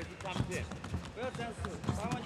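Men's voices calling out around an MMA cage, with soft thuds from the fighters moving on the mat.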